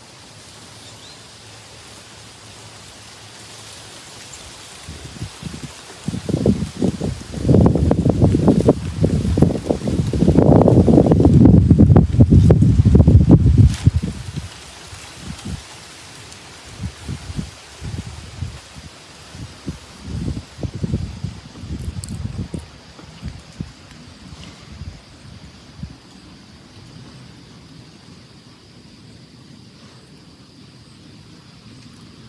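Wind buffeting the microphone: low, irregular gusts that build about five seconds in, are loudest for several seconds, then come in weaker puffs and die away over the last few seconds.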